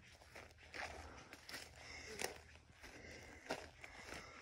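Faint footsteps crunching over dry grass, pine needles and twigs on a forest floor, about one or two steps a second, the sharpest a little past halfway.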